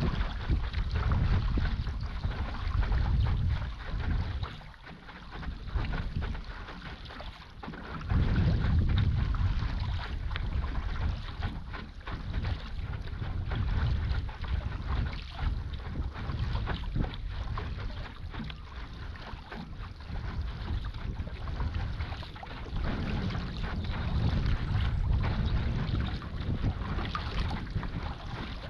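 Water splashing and bubbling in the wake of a stand-up paddleboard as it moves over calm sea, with gusts of wind buffeting the microphone. The wind eases for a few seconds about five seconds in, then picks up again.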